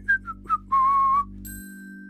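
Whistling: four short notes stepping down in pitch, then one longer held note. Near the end a thin, steady high tone begins.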